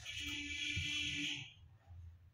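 Large tailoring scissors slicing through a sheet of paper along a pencil line: one long continuous cutting stroke of about a second and a half, a steady rasp of the blades through the paper.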